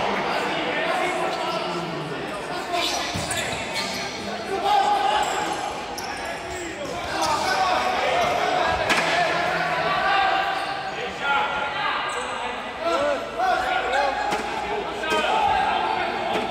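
Futsal ball being kicked and bouncing on an indoor court, with players and spectators shouting, all echoing around a large sports hall.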